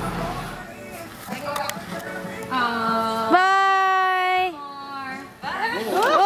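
Excited voices at play: scattered calls and laughter, then a long, loud, high-pitched shriek held for about two seconds from about halfway in, jumping up in pitch partway through. More squeals near the end.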